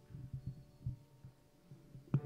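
Soft, irregular low thumps, about six in two seconds, over the fading ring of piano notes.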